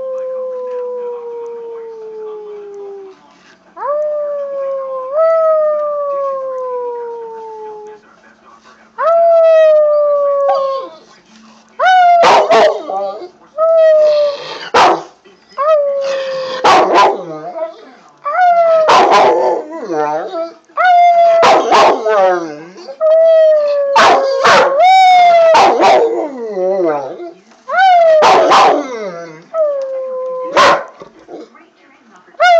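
Rottweiler howling. First come three long howls that slowly fall in pitch. From about twelve seconds there is a run of shorter, louder howls with sharp yelps between them.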